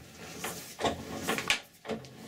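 Lead-screw selector lever on a Colchester Student lathe's screw-cutting gearbox being shifted by hand into the English (imperial) thread position, giving a few metallic clicks and clunks, the loudest about one and a half seconds in.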